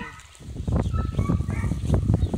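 A dog taking a treat from a hand and chewing it close to the microphone: a dense run of low crackling and smacking that starts about half a second in.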